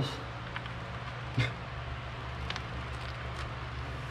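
Steady low background hum with a few faint clicks and one sharper tap about one and a half seconds in, from a vinyl decal being handled and pressed onto a car's window glass with its paper backing.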